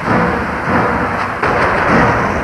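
Explosion sound effects from a TV action scene: a dense rumbling blast noise with two sudden thuds, one at the start and one about a second and a half in.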